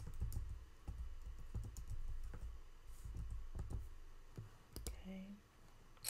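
Typing on a computer keyboard: an irregular run of key clicks and light thuds.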